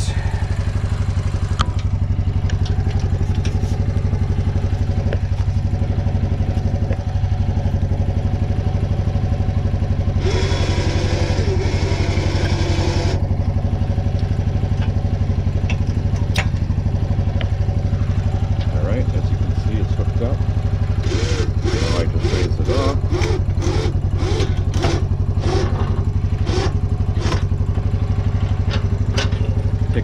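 Kawasaki Prairie 300 ATV's single-cylinder four-stroke engine idling steadily. About ten seconds in there is a burst of harsher whirring noise lasting about three seconds, and in the last third a string of sharp metallic clicks and knocks as the plow mount is handled.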